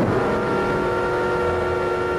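A loud chord of several steady tones that starts abruptly and holds unchanged, like a horn blast or an added sound effect.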